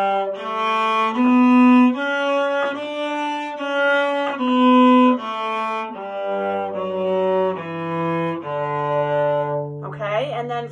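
Cello playing a D major scale in separate bowed notes, one step at a time. It climbs to the top of the scale and steps back down, ending on a long-held low D near the end.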